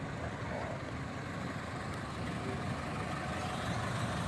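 Ford Model A's four-cylinder engine running at low speed as the car drives slowly past, growing a little louder as it comes closer.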